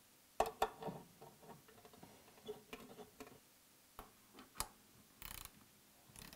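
Hand tool work on the metal gripper housing: a series of small irregular clicks and taps as a T-handle hex key works the screws of the mounting plate, with a short rasping burst near the end.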